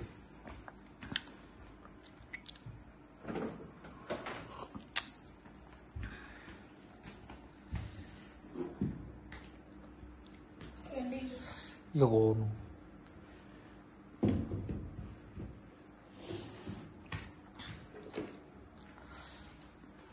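Crickets trilling steadily: one continuous high trill, with a second, lower trill that starts and stops in bouts of a few seconds. Scattered light knocks and clicks come through, and a brief voice-like sound about twelve seconds in is the loudest moment.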